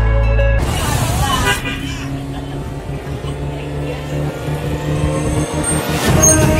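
Intro music with a heavy bass beat, cut off about half a second in by a sweeping whoosh. Then a steady street-traffic hum with a low engine drone runs under background music.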